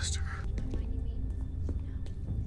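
TV drama soundtrack: a spoken line ends just after the start, then a low, steady rumbling drone of background score.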